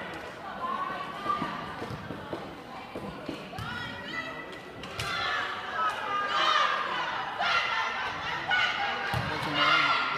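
A basketball being bounced on a hardwood gym floor in short knocks as a player gets ready for a free throw, with voices in the gym calling and talking over it from about halfway through.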